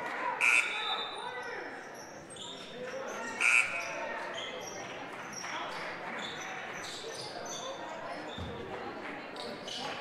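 Echoing gymnasium crowd chatter during a basketball game, with a basketball being dribbled on the hardwood floor. Two short, high squeaks come about half a second and three and a half seconds in.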